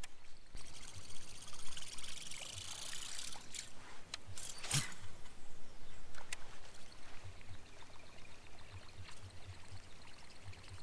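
Water trickling and splashing close by, broken by a few sharp clicks, the loudest about five seconds in, and a low hum that comes and goes.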